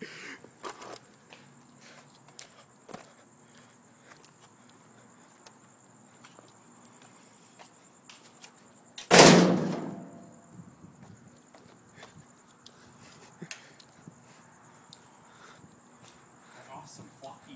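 A single loud crash of something hard being thrown down and smashing, about nine seconds in, dying away over about a second. A few small knocks and clatters come before and after it.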